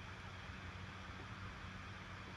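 Faint steady hiss with a low hum underneath: room tone, with no distinct sound standing out.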